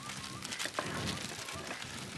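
Greaseproof baking paper rustling and crinkling as it is folded shut by hand around a food filling, in many small irregular crackles.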